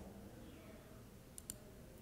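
Near silence, room tone, broken about one and a half seconds in by one quick click: a computer mouse button pressed and released.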